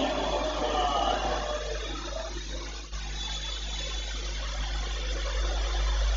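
Steady hiss and low hum of room noise picked up by the lectern microphone, with faint voices trailing off in the first second.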